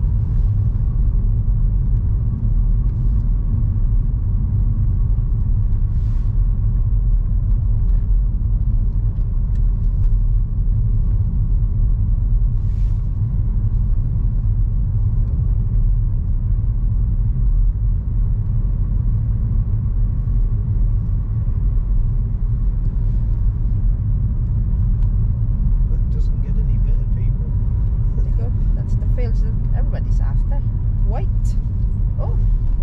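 Road noise inside a moving car's cabin: a steady low rumble of engine and tyres at an even level.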